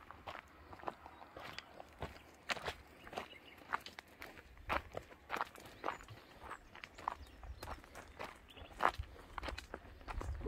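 Footsteps on a stony, gravelly dirt trail, crunching at a steady walking pace of roughly a step every half second.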